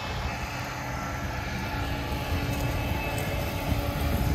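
Gleaner S98 combine harvester driving slowly at close range, its engine running with a steady low drone.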